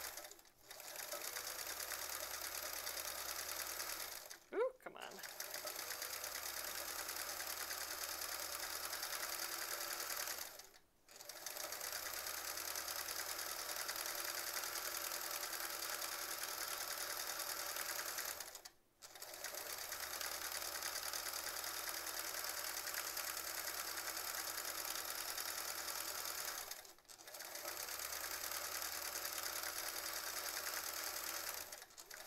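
Sewing machine stitching free-motion quilting through a quilt sandwich, running steadily in stretches of several seconds and stopping briefly four times as the quilt is repositioned.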